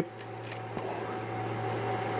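Steady low mechanical hum, like a shop fan or a machine's cooling fan, with faint handling sounds and a light tick about a second in as a pine board is lined up and set down on a desktop CNC router's taped bed.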